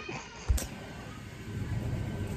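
A phone's microphone knocked once, sharply, about half a second in, then low rumbling handling noise as the phone is moved about.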